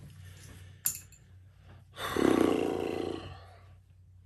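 A light click of glass about a second in, then a man's low, drawn-out wordless groan lasting about a second and a half.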